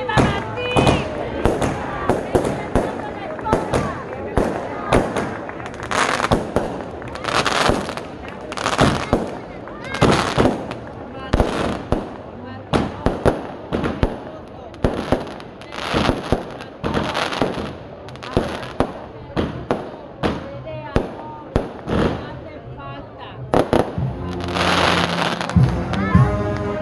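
Aerial fireworks bursting overhead in a rapid, irregular series of sharp bangs and cracks, several of them louder and fuller, over the voices of a crowd.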